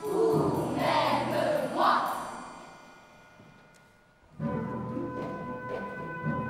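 A children's choir with the orchestra, ending with loud calls about two seconds in that die away to near quiet. About four and a half seconds in, brass and orchestra come in sharply and play on.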